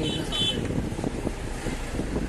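Road noise inside a moving vehicle: a steady low rumble of engine and tyres with a noisy haze, and a few short high tones in the first half second.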